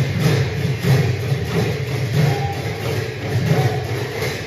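A large congregation's devotional nam chanting with rhythmic accompaniment, a dense low sound that rises and falls in a steady beat.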